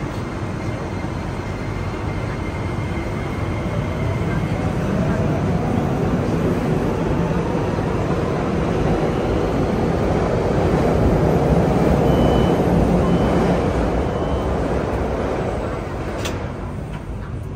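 Subway train interior standing at a station with the doors open: a steady rumble of the car and platform. Near the end, three short high beeps of the door-closing warning sound, and the doors shut with a knock.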